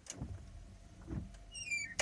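Inside a vehicle cab with the ignition just switched on: a couple of dull knocks, then a short squeak falling in pitch near the end, cut off by a sharp click.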